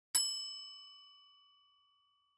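A single bell-like chime, struck once and ringing down over about a second and a half.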